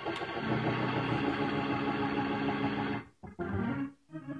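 Church organ playing held chords behind the sermon, cutting off abruptly about three seconds in, followed by one short chord.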